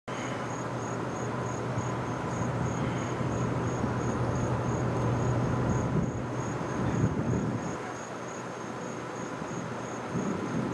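An insect chirping steadily, with high, evenly spaced chirps about three a second. Under it is a low steady hum, weakening about six seconds in, with a broad rumble that swells around seven seconds.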